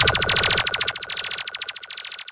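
Electronic effect ending a dancehall mix: a rapid, even stutter of pulses, more than a dozen a second, around one steady high tone, fading out.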